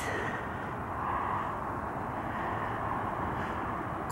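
Distant road traffic hum from cars, a steady background drone that swells slightly about a second in.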